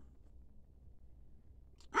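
Near silence: faint room tone with a low steady hum. A man's voice trails off at the start, and his next word begins at the very end.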